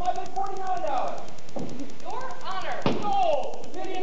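Actors' stage speech, with two sharp knocks, the louder one near three seconds in.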